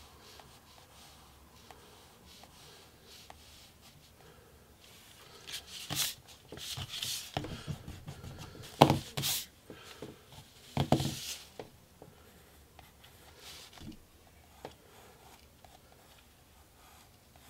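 Wooden graphite pencil scratching across paper while sketching, faint at first, then a cluster of louder, quick strokes from about five to eleven seconds in before it eases off again.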